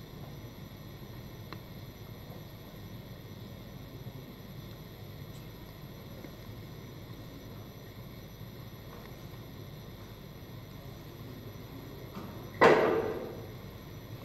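Steady low background hum, broken once near the end by a single sharp knock that dies away over about a second.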